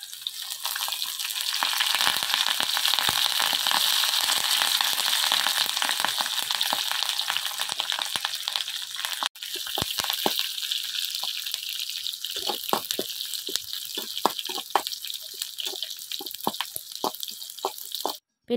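Seasoning of curry leaves and cut aromatics sizzling in hot oil in a small pan. The sizzle is loudest for the first several seconds, then settles to a lighter crackle while a metal spoon stirs and clicks against the pan.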